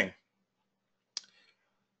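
A single short, sharp click about a second in, against near silence.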